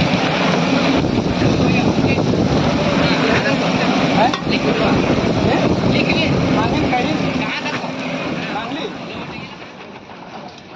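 Prawns frying on a large flat iron griddle: a loud, steady sizzle as they are stirred with a metal spatula, with voices in the background, fading near the end.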